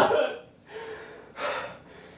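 A man gasping and breathing hard: three noisy breaths, the first the loudest.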